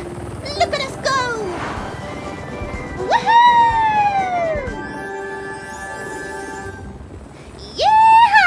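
Cartoon soundtrack: background music with a long swooping whistle-like glide that rises sharply and then falls slowly over about a second and a half, and a second swoop near the end.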